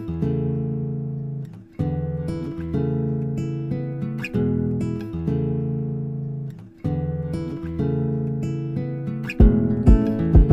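Instrumental stretch of a song with no vocals: acoustic guitar chords strummed and left to ring, changing every couple of seconds. A kick drum comes in near the end.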